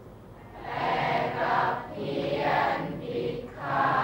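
A class of students reciting Thai verse together in the chanted melodic style of poetry recitation, in phrases of a second or so with short breaks between them.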